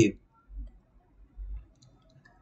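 The end of a man's spoken word, then a pause with two faint, short low thumps about half a second and a second and a half in.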